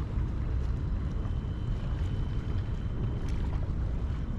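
Steady low wind noise buffeting the microphone, with a few faint light clicks.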